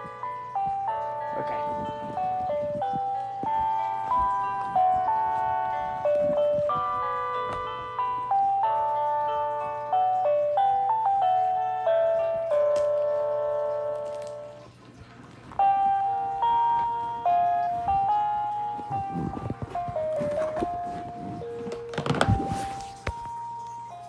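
Battery-powered baby toy playing an electronic chime tune through its small speaker, note by note, now on fresh batteries. The tune pauses briefly about halfway through, and handling knocks and rustles come near the end.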